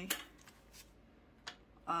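Faint rustling of paper banknotes being handled, with one light click about one and a half seconds in.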